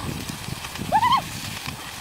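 A dog whining once, a short high-pitched call with a wavering pitch about a second in.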